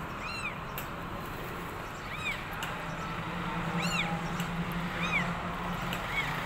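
Newborn kittens mewing: four short, high-pitched cries that each rise and fall, one every second or two.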